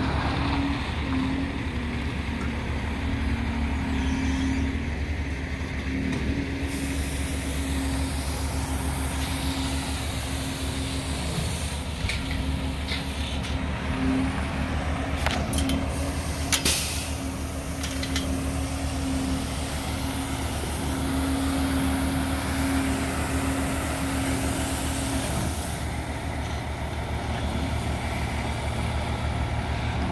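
Diesel engines of a skid-steer loader and a dump truck running steadily, with short hissing and clattering noises around the middle. One engine note drops away a few seconds before the end.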